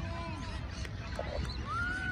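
Wind rumbling on the microphone, with faint distant calls that rise and fall in pitch, one longer arching call near the end.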